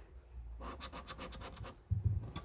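A coin scratching the scratch-off coating of a lottery scratch card in quick back-and-forth strokes, several a second. It starts about half a second in, and there is a short low bump near the end.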